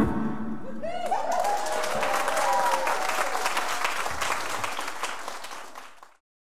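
Audience applauding and cheering at the end of a song, with a few whoops early on top of the clapping; the applause fades away near the end.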